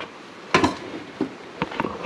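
Camera-handling noise as a handheld camera moves close past the tractor's wiring: a short soft rustle about half a second in, then a few faint clicks.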